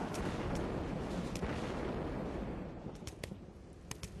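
Thunderclap at the start, then a long rumble that fades over about three seconds. A few sharp taps near the end, like the first big raindrops hitting dry dirt.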